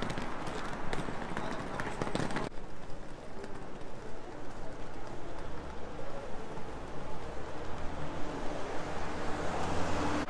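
City street ambience: steady low traffic rumble with a vehicle passing that swells near the end, and a cluster of clicks and rustles in the first couple of seconds.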